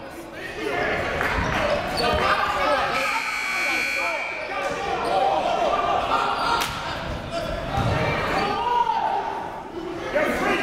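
Overlapping voices of players and spectators echoing in a gymnasium during a stoppage in play. A short high steady tone sounds about three seconds in, and a single sharp knock comes about six and a half seconds in.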